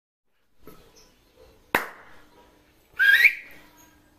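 A sharp click about two seconds in, then near the end a short whistle that rises in pitch.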